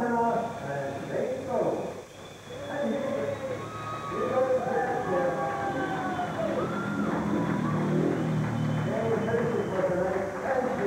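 Indistinct voices, speech-like and continuous, that are not the close commentary.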